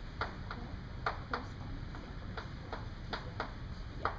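Chalk tapping on a blackboard while writing: a series of short, sharp clicks at an uneven pace, roughly two a second.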